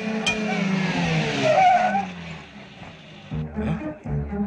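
Film soundtrack: a sharp knock, then a sustained sound with several tones that slides slowly downward in pitch over a noisy wash, swelling loudest about one and a half seconds in before fading away.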